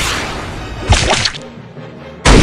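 Added fight sound effects: a whoosh fading away over the first second, then about a second in a sharp, whip-like swish of a web being shot, lasting about half a second.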